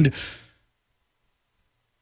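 A man's voice trailing off on a drawn-out word into a breathy exhale that fades within the first half second, followed by dead silence for the rest.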